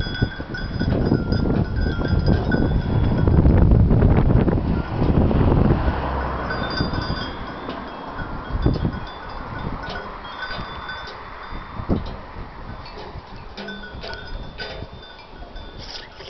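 Many small bells on a grazing flock clinking and ringing irregularly. Heavy wind buffets the microphone through the first half and then dies down.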